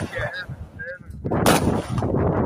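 Weapon fire: a sharp, loud blast about one and a half seconds in, followed by a rolling noise that carries on.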